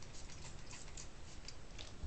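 Hands stretching and rubbing a damp section of tightly coiled hair, giving a few faint, short crackling ticks at irregular spacing.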